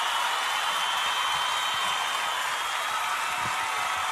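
A steady, even hiss with no speech or music.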